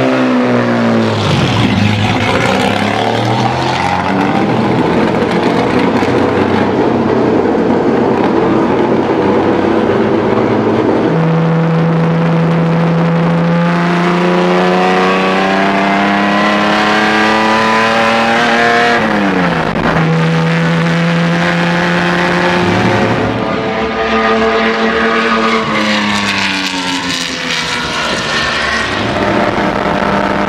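Engine of a 1960s Turismo Carretera racing coupe (cupecita) run hard on track, its pitch climbing steadily under full throttle, dropping suddenly at an upshift past the middle and again a few seconds later, then climbing again.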